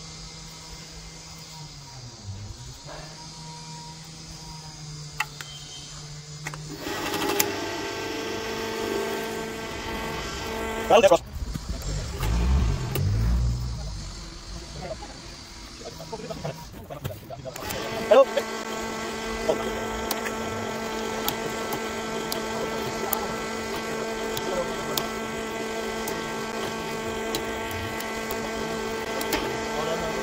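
Engine-driven cable-pulling winch running steadily, its note stepping up and getting louder about seven seconds in as it takes up the pull. A few low thumps and a brief drop come in the middle, and then it settles back to a steady run.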